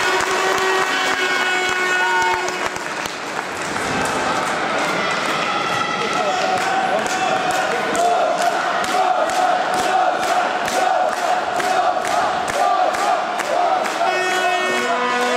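Arena crowd cheering, then from about six seconds in clapping in unison, about three claps a second, under a sustained chant.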